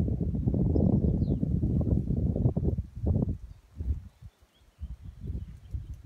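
Wind buffeting the microphone: a low rumble that stops about three seconds in, then returns in a few short gusts.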